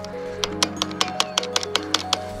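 Loose front disc-brake caliper on a mountain bike clacking against its mount as it is wiggled by hand: a quick, irregular run of sharp clicks starting about half a second in. The caliper has worked completely loose. Background music with held notes plays underneath.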